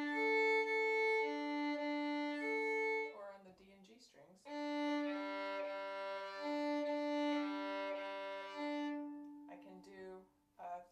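A violin plays slurred string crossings, the bow rocking back and forth between two strings so that two sustained notes alternate. It starts on the A and D strings. After a short pause about three seconds in, it moves to the D and G strings, and the notes fade out near the end.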